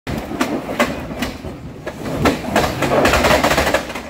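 Lexus GX470 SUV driven hard up a steep, rutted dirt climb: a run of sharp knocks and clacks about two or three a second, building into a dense rush of spinning tyres and flying dirt in the last second and a half.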